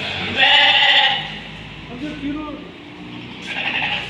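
A sheep bleats once, loudly, about half a second in; the call lasts under a second.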